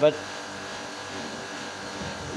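Steady machinery hum made of several fixed tones, holding at an even level.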